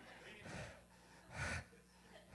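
A mostly quiet pause with one short, sharp intake of breath about one and a half seconds in.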